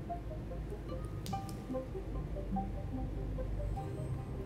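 Quiet background music of short, separate plucked notes at changing pitches.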